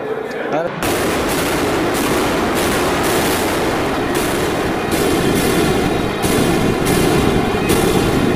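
Loud festival temple percussion that starts suddenly about a second in: dense, rapid drumming with a regular beat of about two strokes a second and a steady ringing tone running over it.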